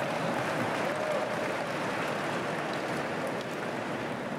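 Large audience laughing and clapping, a steady dense wash of many hands and voices that eases off slightly near the end.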